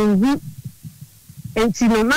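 A person speaking, broken by a pause of about a second in the middle, during which only faint low thumps are heard.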